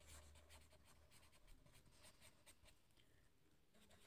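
Faint scratching of a felt-tip marker on paper as words are handwritten, in a string of short, light strokes.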